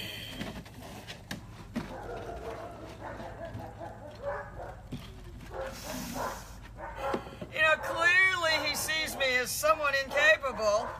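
Labrador puppy whining and yipping: a run of short, high-pitched cries rising and falling in pitch, starting about seven and a half seconds in.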